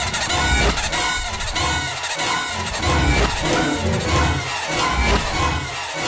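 Dramatic TV-serial background music: a high, wavering melody over a low beat that pulses about once a second.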